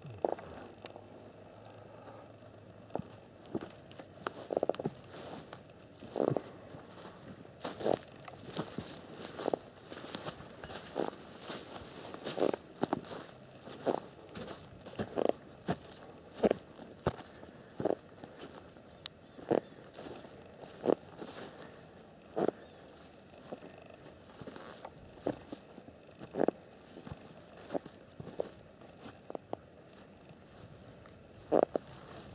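Footsteps of a person walking through dry grass and forest ground: irregular single steps, about one every second or so, each a short, sharp sound.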